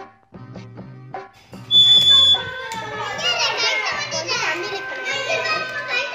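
Ceramic bird water whistle blown: about two seconds in, a shrill steady whistle note, followed by warbling, trilling whistling, over background music with a steady beat.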